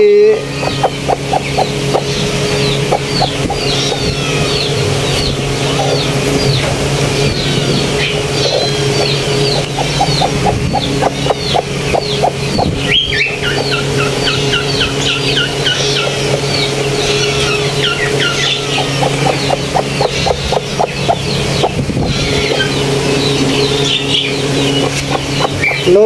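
Many small birds chirping constantly, with bouts of rapid clucking from a hen about a second in, about nine seconds in and about nineteen seconds in, over a steady low hum.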